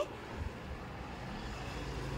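A faint, low, steady background rumble.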